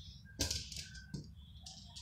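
Light irregular clicks and scuffs of a kitten's paws and claws on a tile floor as it plays with a dangled toy, with a sharper knock about half a second in.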